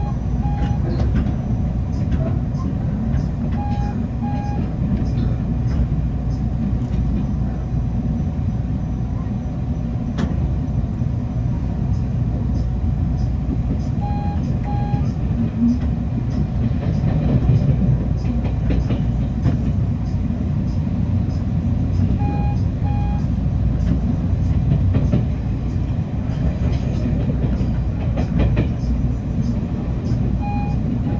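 Inside a Taiwan Railway EMU900 electric train under way: a steady low rumble of wheels on rail, with faint clicks. A pair of short high beeps sounds about three times.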